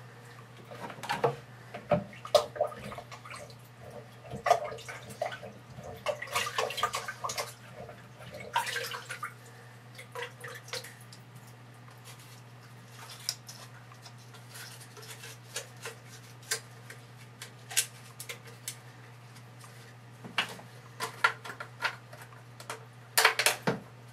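Wet filter pads and plastic cartridge frames of a hang-on-back aquarium filter being handled and fitted back together: scattered clicks and knocks of plastic, with water dripping and splashing into a sink. A steady low hum runs underneath.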